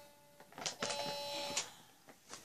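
A steady electronic tone, held for just under a second starting about a second in, with a few sharp clicks around it.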